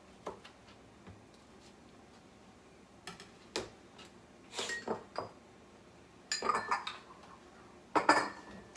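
Kitchen clatter as a kitchen knife and dishes are set down and handled on the counter: a few scattered knocks and clinks after a quiet start, in small clusters, with a sharper knock right at the end.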